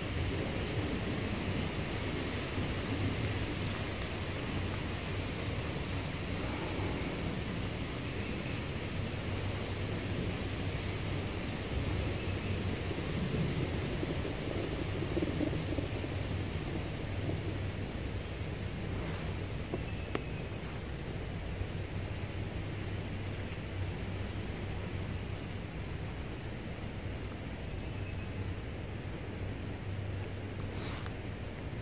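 Steady rushing wind noise on the microphone of a slowly rolling electric bike on a packed-dirt trail, with some rustling.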